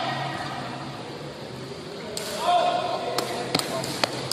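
A few sharp cracks of a sepak takraw ball being kicked, coming in quick succession near the end, along with players' voices calling out.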